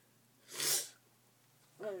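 A single short, sharp burst of breath from a person, about half a second in and lasting under half a second.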